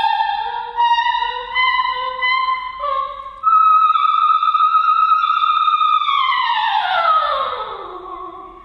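Operatic soprano singing a florid solo passage with almost nothing under her: quick steps between high notes, one high note held for about two and a half seconds, then a long slide down of more than an octave near the end.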